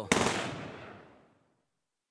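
A single gunshot sound effect in a hip-hop track, its echo fading away over about a second.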